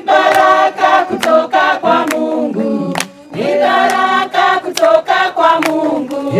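A group of voices singing a song together, with hand claps keeping time about twice a second and a brief break in the singing about three seconds in.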